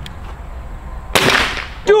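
A Swiss Arms TG-1 pellet rifle firing a single shot about a second in: one sudden, loud report that dies away within about half a second.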